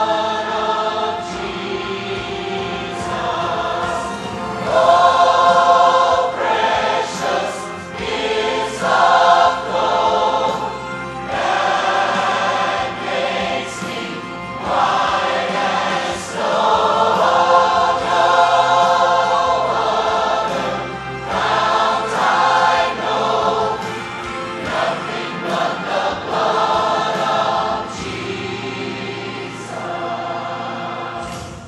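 Large mixed community choir of men and women singing a praise and worship song together, in phrases that swell and ease off every few seconds.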